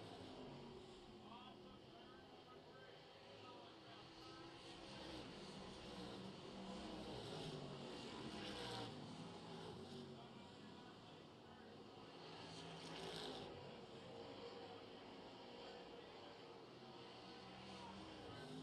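Distant dirt late model race cars' V8 engines running on the oval, faint. The sound swells and fades as the pack passes, loudest about halfway through and again a few seconds later.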